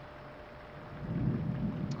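A low rumbling noise that swells about a second in, over a faint steady hum.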